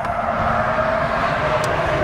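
A motor hums steadily with a held tone, even in level throughout.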